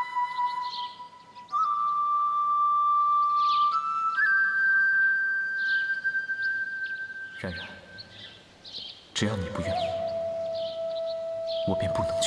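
Chinese bamboo flute playing a slow melody of long held notes, with birds chirping in the background. About seven and a half and nine seconds in come two sharp strikes, after which the melody carries on with lower held notes.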